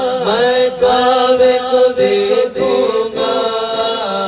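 Men's voices reciting a naat, an Urdu devotional poem, sung as a long melodic chant through microphones, with a lower voice holding a steady tone beneath the gliding lead.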